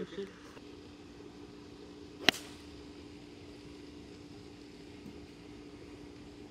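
A golf club striking a ball in a single sharp crack about two seconds in, over a faint low steady hum.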